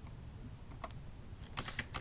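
Computer keyboard keys being typed: a single click at the start, a few more a little before the middle, then a quick run of keystrokes near the end.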